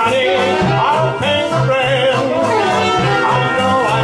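Traditional Dixieland jazz band playing live, with a male vocal over horns and a steady walking bass line.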